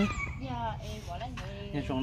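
Speech only: a person's voice talking softly, with short pitched phrases that rise and fall.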